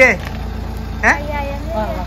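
A car engine idling steadily under a woman's speech.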